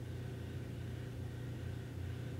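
Steady low hum with a faint thin higher tone above it: unbroken background noise in a quiet room.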